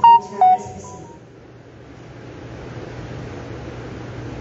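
A short electronic jingle of a few beeping, stepped notes finishes about a second in and rings out in the hall. After it there is only room tone with a low steady hum.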